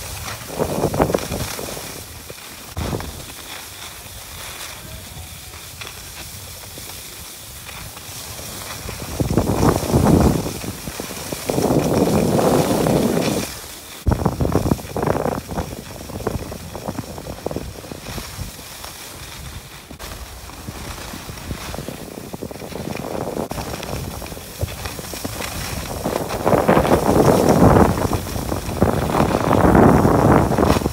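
Wind buffeting the microphone and the scraping hiss of edges sliding over packed snow during a run down a ski slope. It comes in loud surges several times, the longest near the end.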